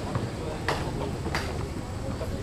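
Crowd of people talking over one another, with two sharp clicks about two-thirds of a second apart.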